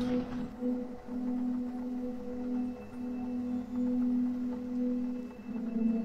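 A steady, low eerie drone with a fainter higher tone above it, swelling and dipping in loudness: a dark ambient music bed.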